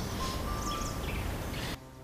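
Outdoor background noise with a few short bird chirps and faint music under it. The noise cuts off abruptly near the end.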